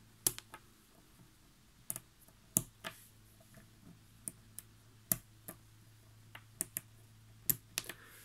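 Small neodymium magnet spheres clicking sharply together at irregular intervals, about a dozen times, as rings of them are pinched into squares and set down.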